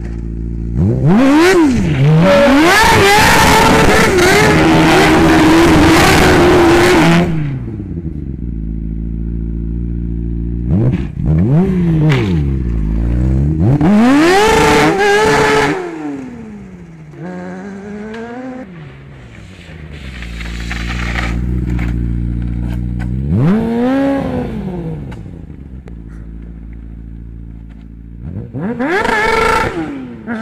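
A combustion engine revved hard several times, its pitch sweeping up and falling back with lower running between. The longest, loudest burst comes in the first few seconds, with shorter rises around the middle and near the end.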